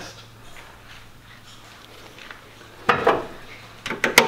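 A low steady hum for the first three seconds or so. Then a short metallic clatter, with another sharp rattle near the end, as a car's metal hood prop rod is unclipped and stowed before the hood is lowered.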